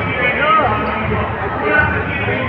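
Indistinct crowd chatter in a large hall, with music and dull low thumps underneath.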